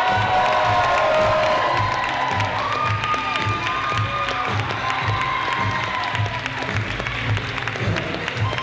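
Upbeat music with a steady beat, under a crowd clapping and cheering.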